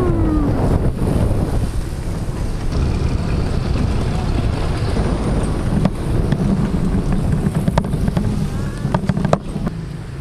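Wind buffeting the microphone of a helmet-mounted GoPro while riding an electric bike along a road: a steady, loud low rumble, with a few sharp clicks in the second half.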